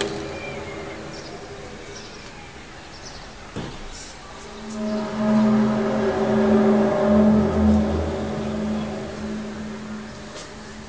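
A low, steady tone with higher overtones above it, the unexplained 'strange sound' heard over a city of high-rise blocks. It swells loud about halfway through, holds for a few seconds, then fades away.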